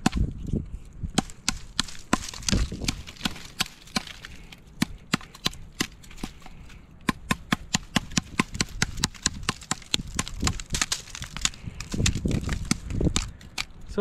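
Small 14-in-1 multitool hatchet chopping into a rotting wooden tree stump: a long run of quick, sharp chops, coming fastest in the middle.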